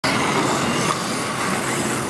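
1:32 scale slot cars whirring around a model track, their small electric motors running steadily under a constant hiss of exhibition-hall crowd noise.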